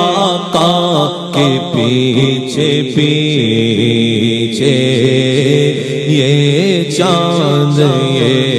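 A man singing a naat into a microphone in long, drawn-out melismatic phrases held between the sung lines, with a steady low hum beneath.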